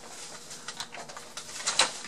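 Plastic clicks and knocks from a Dyson DC29 vacuum's wand and handle being twisted and pulled at by hand, with the sharpest clack a little before the end.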